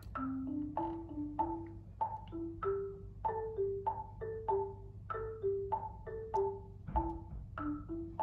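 Sampled marimba playing a syncopated pentatonic melody back from a computer: short struck wooden notes, about two a second, climbing then falling. A low knock comes about seven seconds in.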